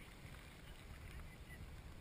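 Faint water lapping at a waterproof-housed action camera held at the water's surface, over an uneven low rumble, with a few faint short high chirps.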